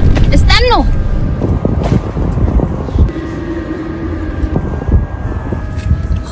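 Background music over a low rumble, with a short vocal exclamation that swoops in pitch about half a second in and a few knocks.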